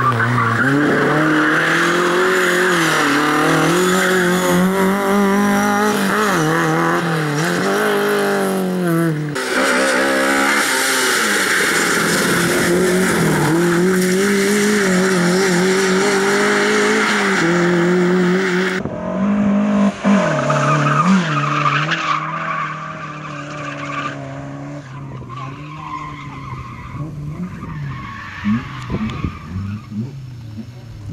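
Lada rally car's four-cylinder engine revved hard, its pitch rising and falling as the car slides through the course, with tyres skidding on the loose surface. About two-thirds of the way through, the sound drops to a quieter, more distant engine.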